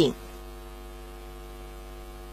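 Steady electrical mains hum with a stack of evenly spaced overtones, unchanging throughout, just after the narrator's last word.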